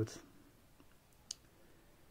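A pause between spoken phrases: faint room tone with one short, sharp click a little past halfway.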